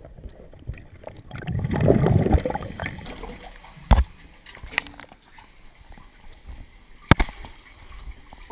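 Water splashing and gurgling as a cave diver breaks the surface of a flooded sump, loudest in a rush about two seconds in. Two short sharp knocks follow, near the middle and near the end.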